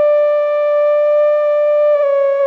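Moog 3P modular synthesizer holding one long, steady note, rich in overtones, with no change in pitch.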